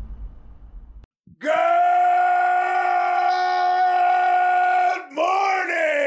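A man's long held yell at one steady pitch, about three and a half seconds long, then a drawn-out shout that slides down in pitch near the end. In the first second, the tail of a crash dies away before the yell begins.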